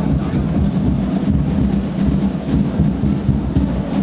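A marching band playing out of sight, its drums and bass drum dominating in a dense, low, rumbling pulse with little melody coming through.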